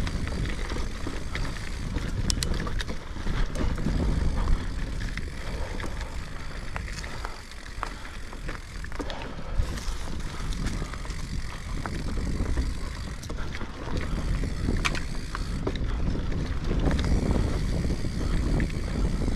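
Mountain bike riding down a dirt forest singletrack: tyres rolling over the trail in a continuous rumble, with wind on the microphone and frequent sharp clicks and rattles from the bike over bumps.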